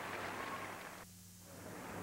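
Faint crowd applause in a figure-skating arena, a steady hiss-like patter. It drops away a little after a second in and comes back fainter near the end.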